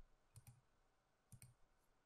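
Two faint clicks about a second apart, each a quick double tick.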